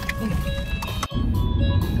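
A car driving on the road: a loud, steady low rumble of road and engine noise that starts abruptly about a second in, after a brief break. Background music plays throughout.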